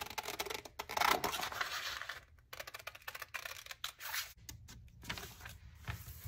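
Scissors cutting through a paper napkin fused to freezer paper: a run of crisp snips with paper rustle, busiest in the first two seconds, then fainter, scattered snips.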